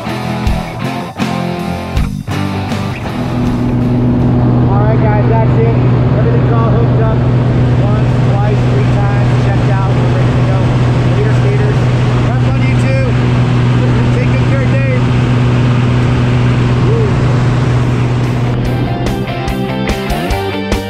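Steady drone of a small single-engine propeller plane heard from inside the cabin, with voices talking over it. Rock music plays for the first few seconds and comes back near the end.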